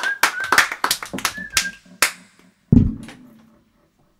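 A small audience clapping, the applause thinning out and stopping about two seconds in, then a single low thump.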